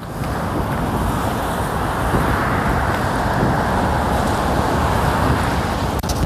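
Steady road traffic noise: an even hum of cars on a busy street.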